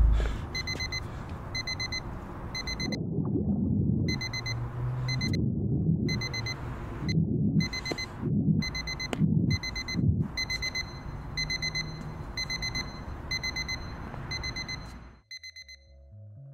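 Digital watch alarm beeping in quick clusters of short high beeps, one cluster about every 0.7 s; it is the pill-reminder beeper. Several low, heavy swells of sound rise under it in the middle of the stretch, and the beeping stops about a second before the end.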